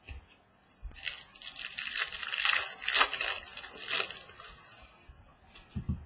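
Foil wrapper of a Bowman baseball card pack being torn open and crinkled by hand: a crackling rustle that lasts about three and a half seconds, loudest in the middle. A soft knock follows just before the end.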